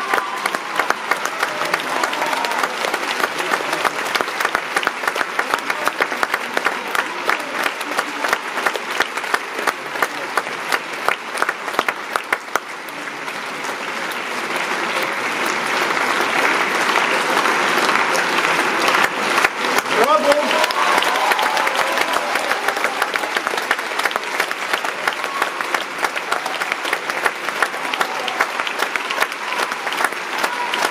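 Large theatre audience applauding steadily for curtain calls, the clapping swelling louder about halfway through.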